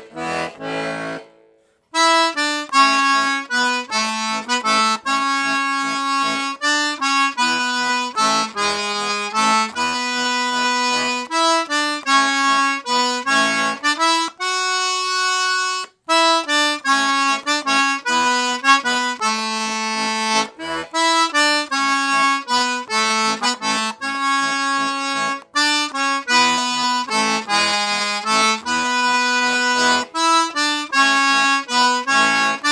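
Mark Savoy Acadian Cajun diatonic button accordion in the key of A, with four sets of reeds (LMMH), playing a brisk tune of quick melody notes over bass chords. About halfway through it holds one chord for a couple of seconds and stops briefly, then the tune starts again.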